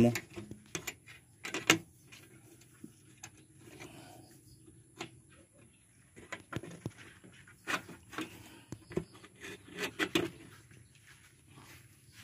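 Irregular clicks, knocks and light rattles of a wire-mesh rabbit cage and its wooden frame being handled, with its wire door being worked open.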